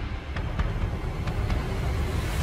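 Deep, steady rumble of cinematic outro sound design, with a few faint crackles scattered through it.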